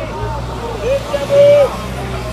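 Second-hand clothes hawker shouting loud, drawn-out sales calls, one rising and then held on a single high note for about half a second midway, over street babble and the low hum of a vehicle engine.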